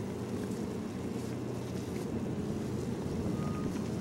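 Wind buffeting an outdoor microphone, a steady low rumble.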